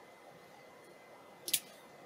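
A single short, sharp click about one and a half seconds in: an SC fibre-optic connector snapping into a coupler, against a faint room background.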